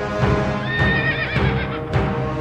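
A horse whinnies over dramatic soundtrack music: one high, wavering neigh starting about half a second in and falling away over about a second.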